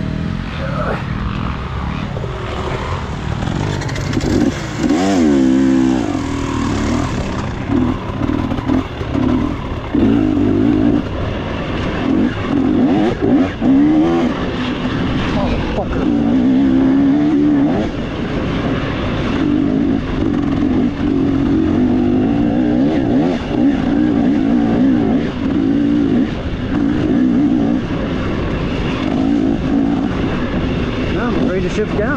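Dirt bike engine under a rider's throttle, the revs rising and falling again and again, with a steep climb in revs about five seconds in.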